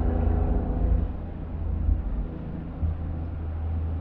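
Suzuki Cappuccino's small turbocharged 657cc three-cylinder engine pulling while driving, heard from the open-topped cabin over a low wind rumble; the engine note fades about a second in.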